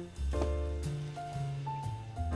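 Jazzy background music: a bass line moving note to note under held higher notes, with one short click near the start.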